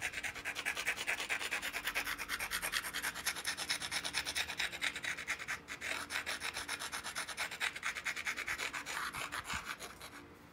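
An obsidian blade edge being ground with a hand-held abrading stone, in rapid back-and-forth scraping strokes, about seven a second, with a short break a little past halfway. This abrading readies the edge for pressure flaking.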